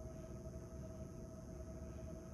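Quiet room tone with a steady low hum and faint hiss.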